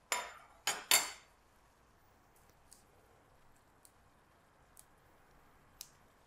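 Chef's knife chopping mint leaves on a wooden chopping board: three louder strokes in the first second, then a few sparse light taps.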